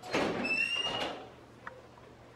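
Glass double doors with push bars being shoved open: a sudden rush of noise lasting about a second, with a brief high squeal in the middle of it, then a light click.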